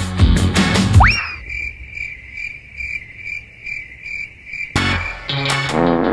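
Cricket-chirp sound effect: a high, even chirp repeating a little over twice a second for about three seconds, cut in as the comic gag for an awkward silence. It is preceded by a quick rising whistle-like glide and breaks off suddenly as music returns.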